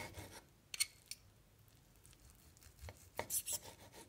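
Knife sawing through a cooked sausage and scraping on a wooden cutting board: short scrapes, with two sharp strokes about a second in and a quick cluster of scrapes near the end.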